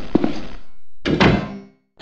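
Evenly spaced hard thuds, about two and a half a second, stopping about half a second in, then one louder thump with a ringing tail about a second in.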